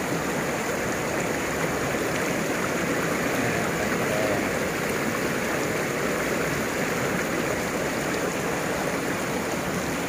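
Shallow rocky stream rushing over stones: a steady wash of running water.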